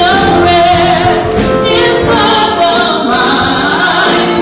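A church choir singing a gospel song, held notes gliding from one pitch to the next, with instruments accompanying.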